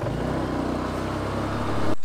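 Motor scooter engine running at a steady speed while riding, with road noise; the even engine note starts and stops abruptly.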